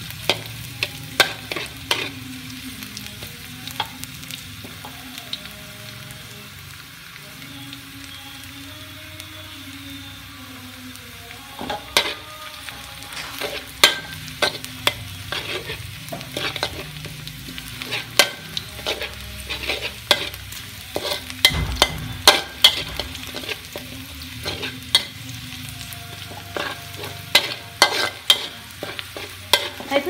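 Spatula scraping and tapping against a wok while sliced shallots and garlic sizzle in a little oil, the aromatics being fried until fragrant. The strokes are sparse for the first third, then come often and sharply for the rest.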